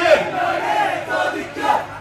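A group of men's voices shouting out together in chorus, loud and ragged, as an Onamkali dance troupe answers the lead singer's line.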